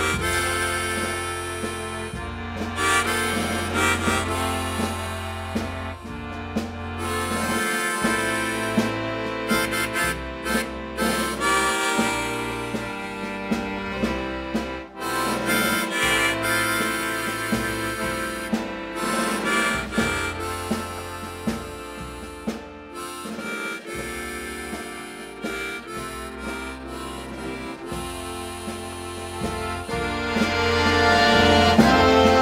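Harmonica solo played into a microphone, over drum-kit percussion and a held low bass note that changes pitch now and then.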